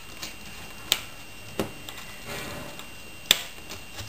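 Thin metal craft wire being wrapped around a wire spoke by hand, with three sharp clicks as the wire and strung beads knock together, the last and loudest near the end, over faint handling rustle.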